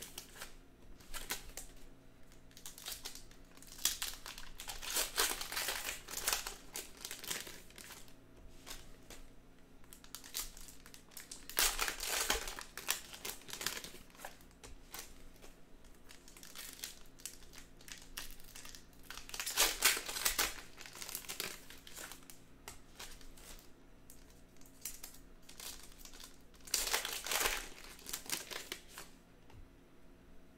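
Foil wrappers of Panini Donruss Optic baseball card packs crinkling as they are handled and torn open by hand, in irregular bursts of rustling with a few louder bursts.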